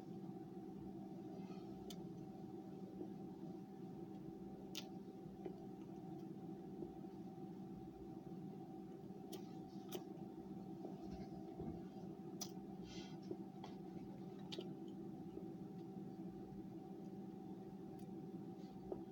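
Faint, scattered crunches and clicks of a mouthful of frozen Argo laundry starch and arrowroot being chewed, at irregular moments over a steady low hum.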